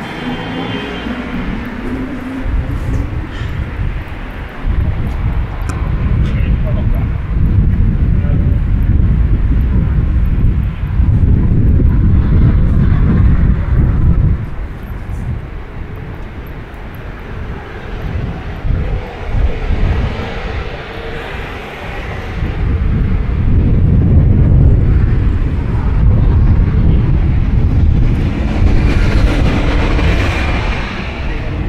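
Outdoor city-street sound on a walk beside a road, dominated by a loud low rumble that swells and fades in long waves of several seconds.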